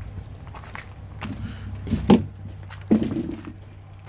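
Two loud knocks, one about two seconds in and a sharp one just before three seconds, with lighter knocks and rustling between them, over a steady low hum.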